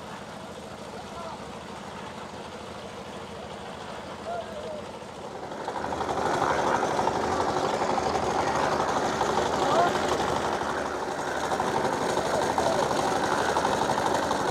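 Small engine of a drum concrete mixer running steadily, coming in loud about six seconds in, with a quieter stretch of faint voices before it.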